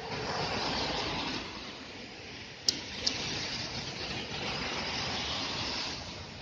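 City road traffic: a steady wash of noise that swells and eases, with a sharp click about two and a half seconds in.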